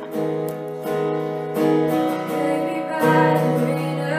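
Live acoustic guitar strumming sustained chords that change about every second, with a woman singing over it.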